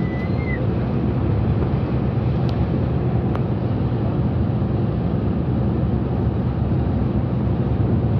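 Steady low drone of a Yutong coach's engine and tyres on the road, heard from inside the driver's cab while cruising at motorway speed.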